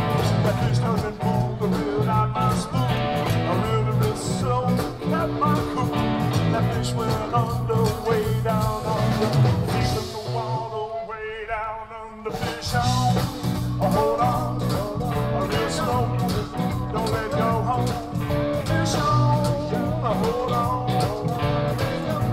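Zydeco band playing live: button accordion, rubboard, drums and electric guitar, with a man singing. About ten seconds in, the drums and low end drop out for about two seconds, then the full band comes back in.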